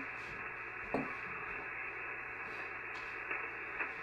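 HF ham radio transceiver on 40 meters putting out a steady hiss of band noise from its receiver while the dial is tuned in search of a clear frequency, with a short click about a second in.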